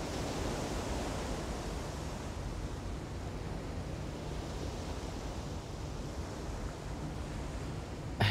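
Steady, even background hiss of outdoor ambience, with no distinct events.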